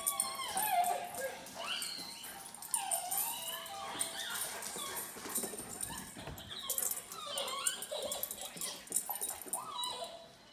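A dog whining and yelping in excited play, a run of short, high cries that rise and fall in pitch.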